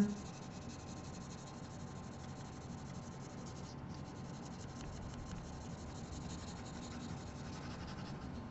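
Graphite pencil shading on paper, the side of the lead rubbed back and forth in quick, faint scratchy strokes.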